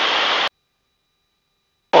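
Steady cabin noise of a Super Cub in level cruise: engine and wind through the open windows. It cuts off abruptly about half a second in, leaving dead silence with only a faint thin high tone for over a second, until the noise comes back near the end.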